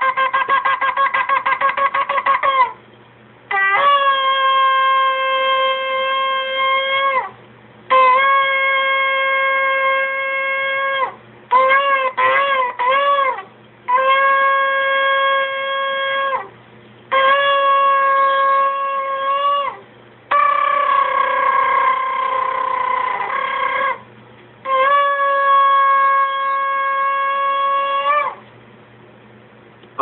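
Shofar (ram's horn) blasts played from a recording, all on one pitch: a fast run of short staccato notes, then about six long held notes of three to four seconds each, with a few short broken notes near the middle.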